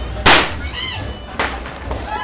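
A loud firecracker bang about a quarter second in, followed by a second, fainter bang about a second later.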